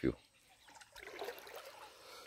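Faint trickling of water in a shallow rocky stream, coming up about half a second in.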